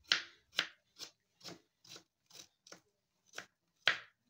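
Kitchen knife chopping green chillies on a cutting board, sharp knocks at about two a second.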